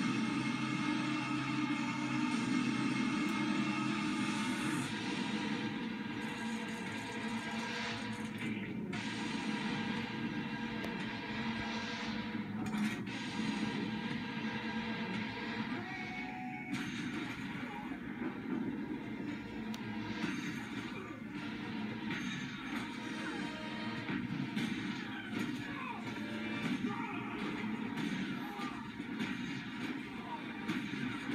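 Dramatic music score from a television drama's soundtrack, played through a TV set, with a few sharp hits from sound effects along the way.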